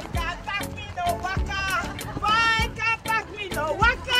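Music: a song with a sung vocal line over a steady beat.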